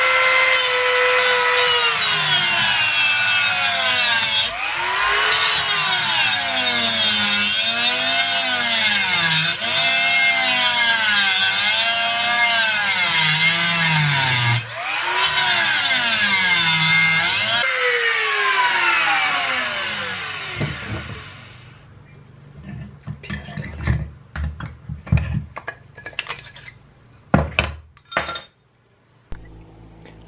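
Handheld rotary tool with a small cut-off disc cutting into the metal mounting bracket of an aluminium oil cooler, its whine rising and falling in pitch as the disc bites. It stops briefly twice, then winds down with a falling whine about two-thirds of the way in, followed by scattered clicks and knocks of the part and tools being handled.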